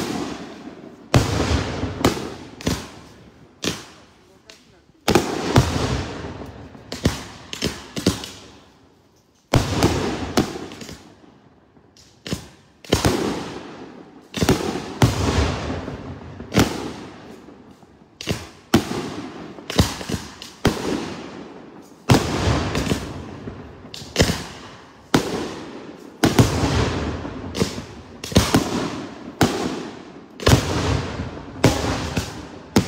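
Daytime fireworks display: aerial shells bursting overhead in rapid, irregular succession, each sharp bang trailing off in a rolling echo. The bangs come in clusters with a few short lulls between them, and the shells leave puffs of coloured smoke.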